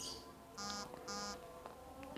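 Two short electronic beeps, about half a second apart, over faint room tone.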